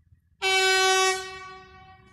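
Train horn giving one short blast about half a second in, a single steady note held for under a second that then dies away over about a second.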